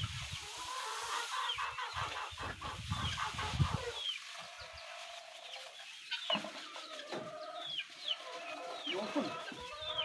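Chickens clucking, with short falling calls scattered through the whole stretch. Underneath in the first few seconds, the soft rush of rice bran poured from a sack onto a heap.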